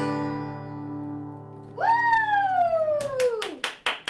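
A final strummed chord on a steel-string acoustic guitar rings out and fades. Just under two seconds in, a voice lets out a long high whoop that falls in pitch, and a few hand claps follow near the end.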